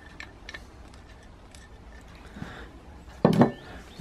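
Faint scattered ticks and scrapes of sweet pea seeds being pushed about on the compost of a plastic seed tray with a plant label. About three seconds in there is one short, louder thump.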